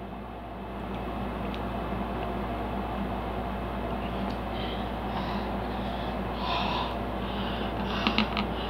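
Steady low room hum, with faint quick breaths through the nose, about two a second, in the second half.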